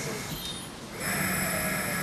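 Hospital ward equipment: a steady hiss and low hum that get louder about a second in, over a faint high electronic whine, with a faint voice at the start.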